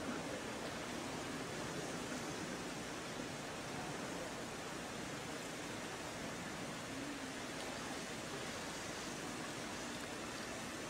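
Steady, even background hiss with no distinct sound in it.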